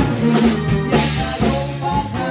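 Norteño band with saxophone playing an instrumental passage: button accordion, alto saxophone, bajo sexto, electric bass and drum kit, with sharp drum accents, the first at the very start.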